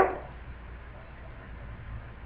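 Quiet room tone: a faint steady hiss with a low hum beneath it, following the tail of a spoken word at the very start.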